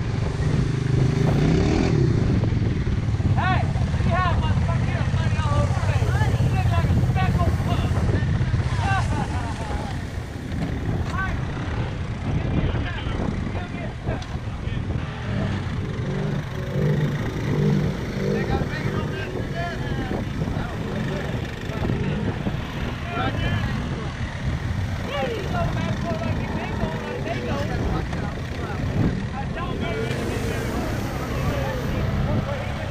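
ATV engines running through deep mud, loud and steady at first, then dropping back and rising again about halfway through.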